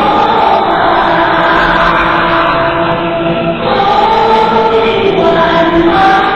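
A group of voices chanting a devotional song (dao song) in unison, in long held notes; a new phrase begins a little past halfway.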